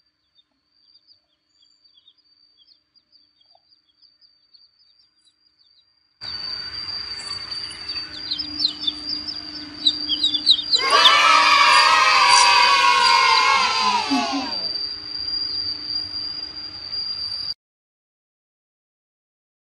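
Baby chicks peeping in short high chirps, faint at first. From about six seconds a louder noisy background comes in. Near the middle the loudest sound is a drawn-out tone with many overtones that slides slowly downward for a few seconds. The sound cuts off abruptly near the end.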